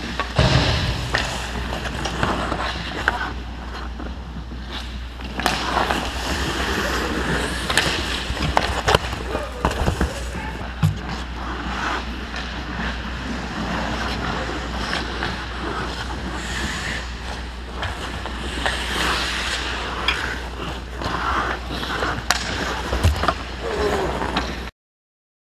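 Hockey skate blades scraping and carving on rink ice, with scattered sharp clacks of sticks and pucks, over a steady low hum.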